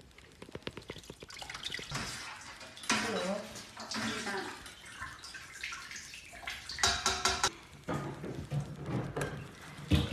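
Kitchen tap running at a stainless steel sink, with quick clicks and scrapes of utensils in the first two seconds.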